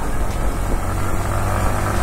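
A Yamaha sports motorcycle's engine running steadily while riding in third gear at about 52 km/h, with the even rush of wind and road noise over the engine hum.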